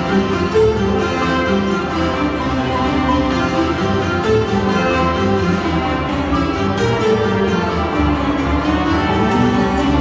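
A marimba played with mallets by two players at one instrument, taking a solo over an accompanying orchestra with strings.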